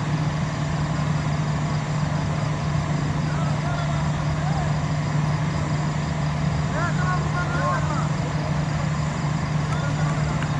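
Faint, distant voices calling out across the field, most noticeably a short exchange a few seconds before the end, over a steady low hum and noise.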